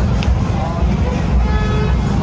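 Busy nightlife street: club music bass spilling from the bars, with crowd chatter and passing cars. A steady pitched tone comes in about three-quarters of the way through.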